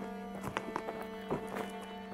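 Contemporary chamber music for flute, viola and cello: low held string notes with four sharp knocking strikes over two seconds.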